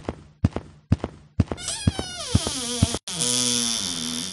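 Horse sound effects: hooves clopping at a walk, about two strokes a second, then a horse whinnying with falling pitch and neighing again about three seconds in.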